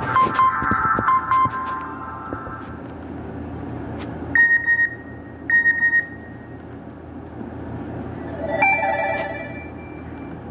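Nokia 5228 ringtones and alert tones played one after another through a Nokia 130's small loudspeaker. A short melody at the start, two matching beeping phrases about a second apart midway, and another short melodic phrase near the end.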